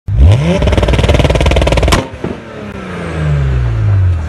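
Car engine revved hard: the pitch climbs quickly, holds high with a fast even pulsing, cuts off with a sharp crack about two seconds in, then the revs fall away slowly.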